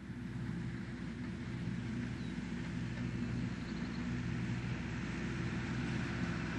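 A Massey Ferguson farm tractor's diesel engine running steadily under load as it pulls a hay mower through a field: a low, even drone that fades in over the first second.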